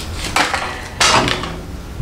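Small plastic stationery, a pencil sharpener with an eraser, being handled on a glass tabletop: two short clattering knocks, about half a second and one second in.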